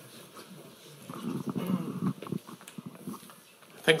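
Faint, muffled voice away from the microphone in a lecture hall, with a few small handling clicks, before clear speech begins right at the end.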